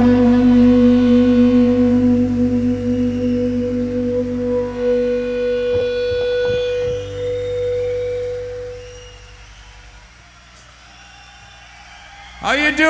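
A single sustained electric guitar note ringing out at the end of a live rock song, holding steady and then fading away over about nine seconds, with a few soft knocks partway through.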